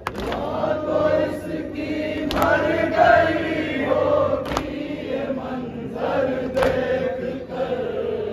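A crowd of men chanting a Muharram nauha (lament) together, with a sharp unison slap of hands on chests (matam) about every two seconds, four strikes in all.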